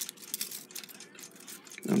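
Westclox Big Ben time mainspring being wound by hand into its barrel: faint, scattered light metallic clicks and scraping as the steel coils rub and catch against each other and the barrel.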